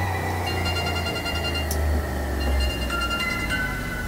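Horror film score: a steady low drone under high held notes that shift pitch every second or so.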